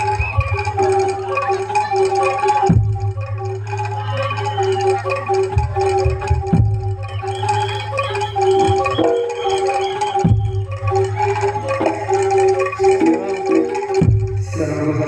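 Live Javanese gamelan music for jaranan: metallophones play a repeating melody over a sustained low tone, with occasional sharp drum strokes.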